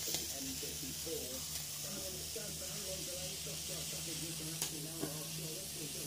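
Spiced liquid in a saucepan on an electric hob, hissing steadily as it heats up toward the boil, over a steady low hum. Two faint clicks sound, one at the start and one about four and a half seconds in.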